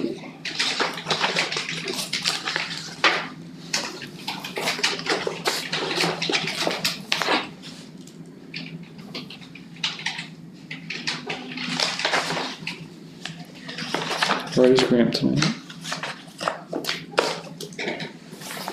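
Paper rustling and shuffling as sheets and booklets are handled on a table, a string of short scratchy rustles coming and going throughout, with a brief low voice about 15 seconds in.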